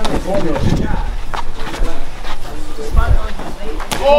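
Men's voices shouting and calling out at ringside during a sparring round, with a couple of sharp smacks of boxing gloves landing, one about a second and a half in and one near the end. A low rumble of wind on the microphone runs underneath.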